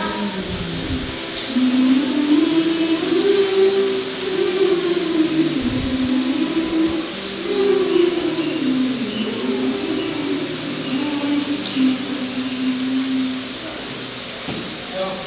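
A children's choir humming a slow melody together in long held notes that glide gently up and down.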